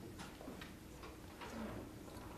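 Faint, irregular small clicks and taps from people handling things at the meeting tables, over a low steady room hum.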